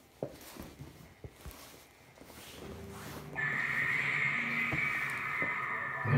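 Knocks and clicks as an electric guitar plugged into an amp is lifted and handled, then its strings ring through the amp with a steady high whine coming in a little over three seconds in.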